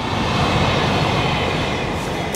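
Electric commuter train (the A Line) passing close by: a steady rush of wheels running on the rails.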